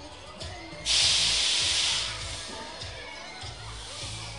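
A sudden loud burst of hissing, like compressed air or gas being let out, lasting about a second and fading away, over background music.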